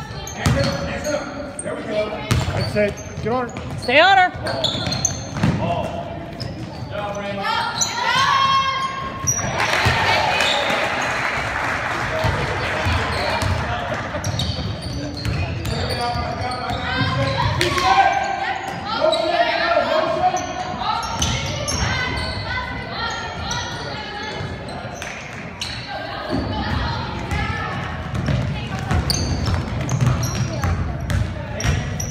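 Indoor basketball game in a gymnasium: a ball bouncing on the hardwood floor, sneakers squeaking, and spectators and players shouting in the echoing hall. A louder stretch of crowd noise comes about ten seconds in.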